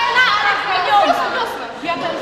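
Speech only: several people talking and chattering, their voices overlapping.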